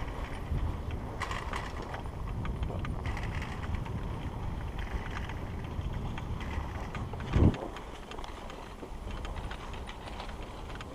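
Skis sliding uphill over packed snow while the rider is pulled by a platter ski tow: a steady low rumbling hiss with scattered light clicks. One short, loud, low thump comes about seven and a half seconds in.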